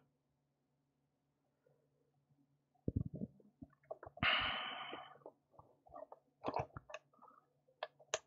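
Faint clicks and light knocks of small plastic and metal parts as a shock absorber is fitted onto a 1/18-scale RC crawler's chassis mounts. They start about three seconds in, with a brief scraping rustle about four seconds in.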